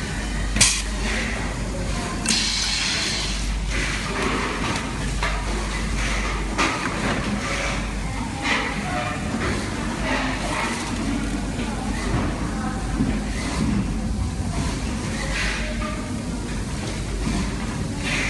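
Factory-floor ambience with indistinct background voices over a steady low hum. A sharp click comes about half a second in, a short hiss follows a couple of seconds later, and a few lighter clicks come later on.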